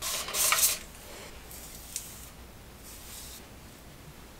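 A Flairosol continuous-mist spray bottle misting damp hair with a hiss. The loudest spray comes in the first second, and fainter sprays follow twice.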